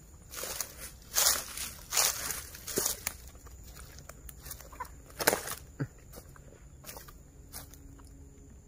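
Footsteps crunching and rustling through dry oil palm fronds and undergrowth, in irregular bursts of crackling, loudest about a second in, two seconds in and again around five seconds.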